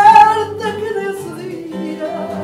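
Female fado singer holding a loud sung note with vibrato at the start, then singing on more quietly, over plucked accompaniment of Portuguese guitar (guitarra portuguesa) and fado guitars.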